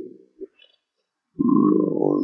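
A man's voice trails off and leaves about a second of near silence. A little past halfway he starts a drawn-out, low hesitation sound, a filler 'e-e'.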